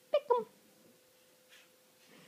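Domestic cat giving two short meows in quick succession.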